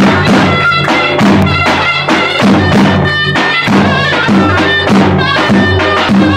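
A zurna (Turkish double-reed shawm) plays a loud, reedy melody over a davul (double-headed bass drum) beaten with a stick in a steady rhythm.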